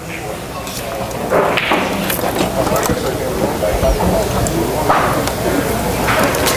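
Pool hall room noise: a steady low hum with indistinct background voices and a few faint clicks.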